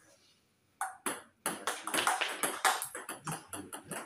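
Table tennis ball clicking off paddles and bouncing on the table in a quick rally. The hits start about a second in and come several times a second.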